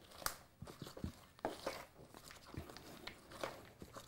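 Wooden spoon stirring a dry flour mixture with toasted pumpkin seeds in a mixing bowl: faint, irregular scrapes and taps of the spoon against the bowl and through the flour.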